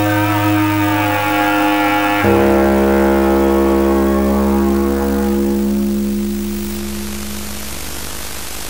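Music of long held chords over a deep bass drone, shifting to a new chord about two seconds in and softening toward the end.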